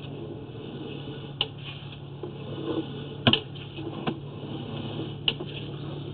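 Steady low electrical hum and hiss from a sewer inspection camera rig, with four sharp clicks spread through as the camera's push cable is drawn back up the line.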